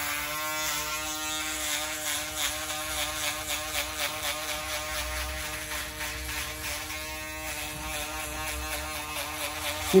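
Cordless electric foil shaver buzzing steadily as it is worked over the nape of the neck, smoothing out the lines left in a skin fade.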